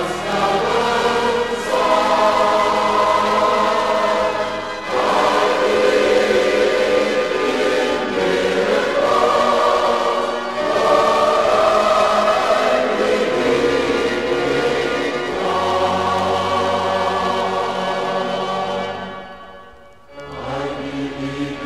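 A choir singing a hymn in long held chords over low bass notes. The chords change every two to three seconds, and the song fades out near the end.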